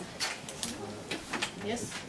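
Quiet classroom with faint, indistinct voices and a few light clicks, then a short spoken "yes" near the end.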